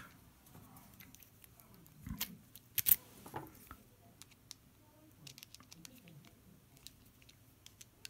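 Small clicks and taps of a screwdriver and a metal lock cylinder being handled, the screwdriver tip set into the screws at the back of the cylinder. The sharpest click comes a little before three seconds in.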